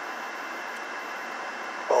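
Steady, even rushing noise inside a car's cabin, with no change through the pause; a man's voice comes back with one word near the end.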